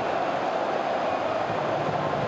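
Steady stadium crowd noise from football fans, an even wash of many voices with no single shout or chant standing out.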